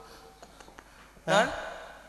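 Low background hum through a stage sound system with a few faint ticks, then one short vocal exclamation from a performer on a microphone about a second in, rising sharply in pitch before fading.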